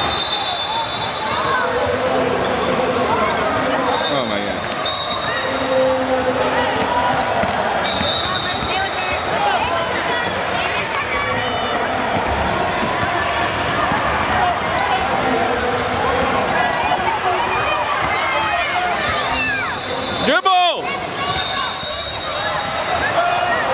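Youth basketball game on a hardwood gym court: a basketball being dribbled amid a steady din of spectators' and players' voices. A short sudden burst comes near the end.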